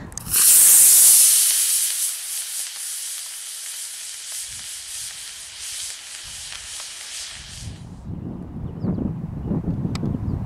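24 mm solid-propellant rocket motor of an RC rocket glider igniting and burning with a loud hiss at liftoff. The hiss fades steadily as the glider climbs away and stops about eight seconds in.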